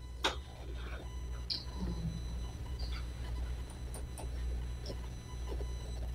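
Meeting-room room tone: a steady low hum with a few faint clicks and light handling noises, such as paper being picked up at the table.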